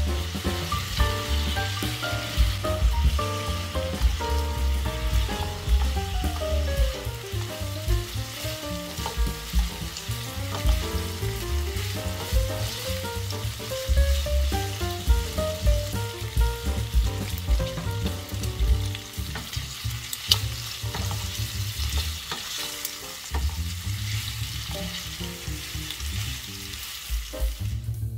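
Pork belly slices sizzling and frying in soy sauce in a nonstick frying pan, stirred and turned with a spatula.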